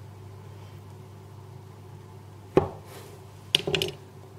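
A chef's knife pressed down through a frozen log of sablé dough, the blade knocking sharply onto a plastic cutting board about two and a half seconds in. Near the end there is a brief clatter of a few quick knocks.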